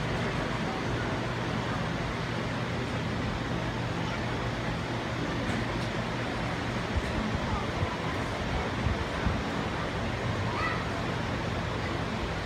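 Steady outdoor background noise with a low hum, under a faint murmur of voices from an audience.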